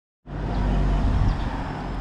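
A motor vehicle's engine running steadily with a low hum, cutting in suddenly about a quarter second in.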